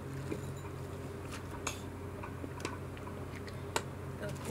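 A person drinking from a plastic water bottle: scattered small clicks and swallowing noises over a steady low hum, with a sharper click near the end.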